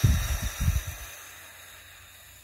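A long breath blown out through pursed lips: a rushing hiss that fades away, with a few loud low buffeting thumps in the first second where the breath hits the microphone.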